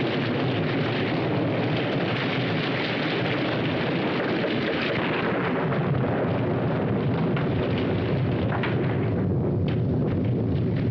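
Heavy rain falling, a steady, even hiss, with a few short taps near the end.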